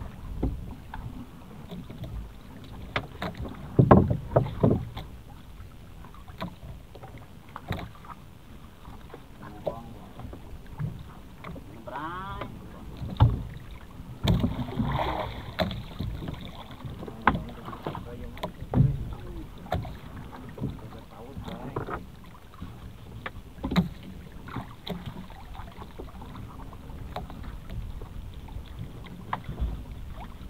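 Irregular knocks and clunks on a small fishing boat at sea, over a low, uneven rumble of water and wind; the loudest knocks come about four seconds in and again about thirteen seconds in.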